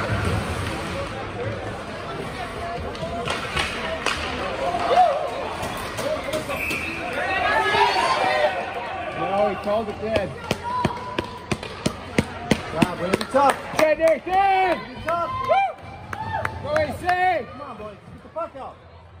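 Ice hockey game in an arena: sharp clacks of sticks and puck on the ice and boards, with young players' and spectators' voices calling out, busiest in the second half.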